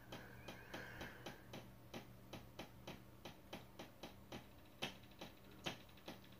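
Faint, regular ticking, about four ticks a second, over a low steady hum, with two slightly louder clicks near the end.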